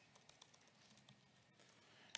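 Faint typing on a laptop keyboard: scattered soft key clicks.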